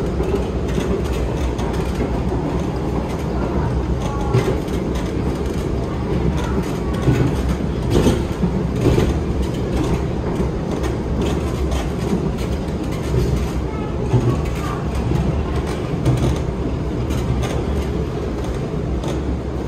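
Alstom Movia R151 metro train running at speed, heard from inside the car: a steady rumble of wheels on rail, with a few brief clicks and knocks.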